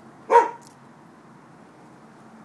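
A dog gives a single short bark about a third of a second in.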